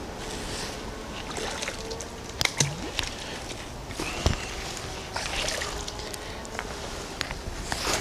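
A large neodymium magnet on a rope being worked through a shallow creek: water sloshing and trickling, with scattered small clicks and knocks and one louder thump about four seconds in.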